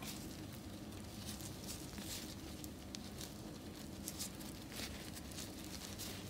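Faint, irregular soft pats and small clicks of hands pressing and rolling sticky mashed mung bean paste into a ball.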